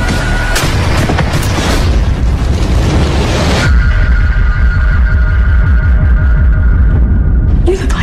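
Dramatic trailer music with a heavy pulsing bass and a boom. A dense, noisy hit gives way about three and a half seconds in to held steady tones over the same bass beat.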